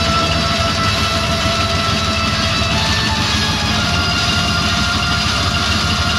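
Heavy metal band playing live: distorted electric guitars, bass and drums in a dense, steady wall of sound with fast pulsing low down.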